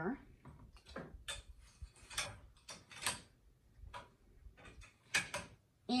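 Scattered light clicks and knocks of a magnetic embroidery hoop being handled and fitted onto the hoop holder of a Brother PR670E six-needle embroidery machine, with the hoodie being moved around it. Two sharper clicks come close together near the end.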